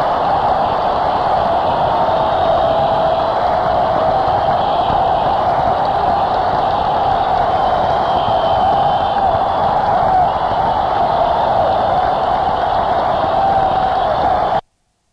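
A large arena crowd cheering and applauding in a steady roar, heard on a dull-sounding audience recording.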